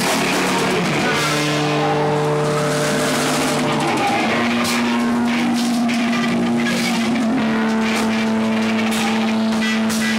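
Live rock band playing loud: distorted electric guitars hold long droning chords over drums and cymbals. The chord changes about a second in and again around four seconds, with sharp cymbal or drum strikes in the second half.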